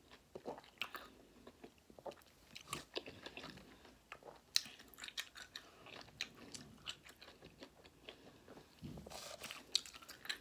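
A person chewing citrus wedges with the mouth close to the microphone: irregular short smacks and clicks of chewing throughout, with no words.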